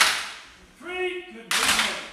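Wooden fighting sticks striking together twice, sharp cracks that ring out in a hall, the first right at the start and the second about a second and a half in, with short steady tones in between.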